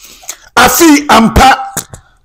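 A man clearing his throat close to a handheld microphone: a breath first, then a short voiced throat-clearing sound, and a single click near the end.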